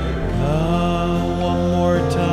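A slow hymn sung in long held notes, a man's voice leading, over instrumental accompaniment.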